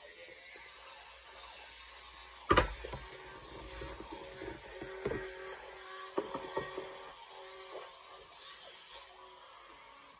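Teeth being brushed with a toothbrush. A sharp, loud knock comes about two and a half seconds in, and a few softer knocks follow later.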